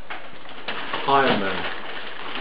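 A person's voice making one short, falling vocal sound about a second in, over faint room hiss.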